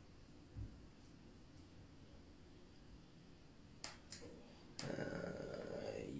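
Quiet room tone with a soft low thump about half a second in and a few sharp, faint clicks a little before the end. Near the end comes a hesitant 'uh'.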